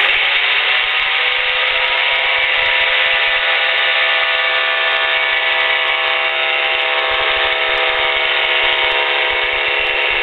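Revo weight-shift trike's engine powering up for a takeoff run, rising in pitch over about the first second and then holding steady at full power. It sounds thin and telephone-like, with no deep bass or high treble.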